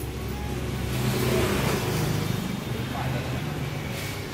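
A steady low motor hum that swells louder for about a second and a half, starting about a second in, then eases back.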